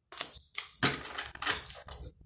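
Tarot cards being handled and laid down on a desk: a quick, irregular series of about five sharp clicks and taps.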